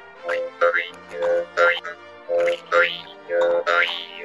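Sakha khomus (jaw harp) plucked in a steady rhythm: a held drone with repeated rising twangs as the mouth shapes the overtones.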